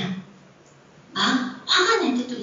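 Speech only: a voice talking in short phrases, with a pause of under a second near the start.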